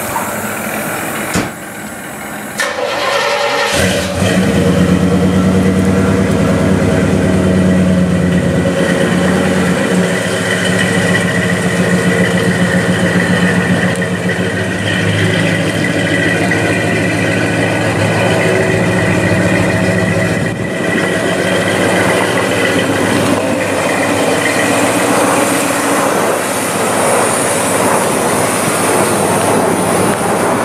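Fuel-injected 454 Chevy big-block V8 in a 1940 Studebaker pickup starting up about three to four seconds in, then running steadily as the truck drives out.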